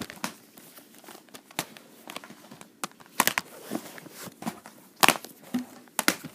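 Hands handling an unboxed Blu-ray set's packaging and contents: scattered sharp clicks and knocks with faint crinkling in between, the loudest about three seconds in and again about five seconds in.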